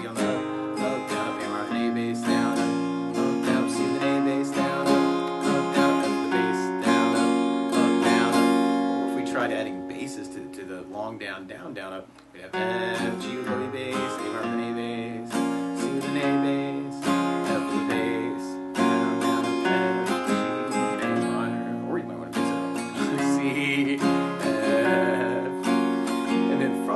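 Acoustic guitar with a capo on the first fret, strummed through the chord progression F, G, A minor, C, F. Each chord starts with a single bass note picked on the first down stroke, followed by a down-up-up-down-up strum. The playing dips briefly about halfway through, then carries on.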